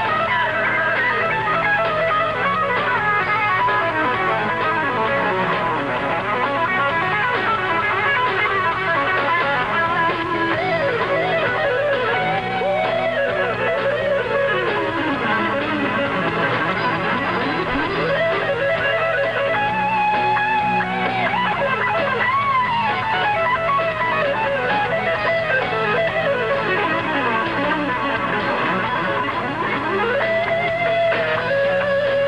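Electric guitar solo in 1980s rock: fast legato and picked runs that sweep up and down in pitch over a steady low band backing.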